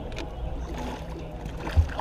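Low rumble of water and movement around a small fishing boat, with a single dull thump near the end as a large flathead catfish is brought in beside the boat.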